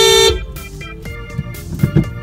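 A 2017 Honda Fit's horn giving one long steady honk that cuts off about a third of a second in, sounded because the vehicle ahead was backing into the car. Background music follows, over low car-cabin rumble.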